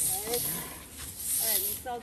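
Twig brooms swishing across rice grain spread on concrete, in repeated strokes about a second apart, with voices talking over them.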